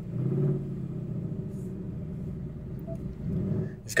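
2024 Ford Mustang idling, a low steady rumble heard inside the cabin.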